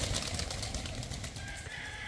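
A flock of pigeons taking off together, a rush of many flapping wings that slowly fades as they climb away.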